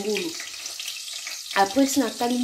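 Hot cooking oil sizzling steadily in a pan, heard clearly in a gap of about a second between stretches of a woman's voice at the start and near the end.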